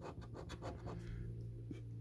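Scratchcard being scratched: a quick run of short scrapes across the card's latex panel that stops after about a second, over a faint low hum.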